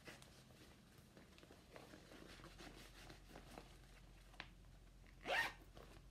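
Quiet handling of fabric and a cross-stitch project bag: faint scattered rustles, a small click about four and a half seconds in, then one short louder rasp a little after five seconds.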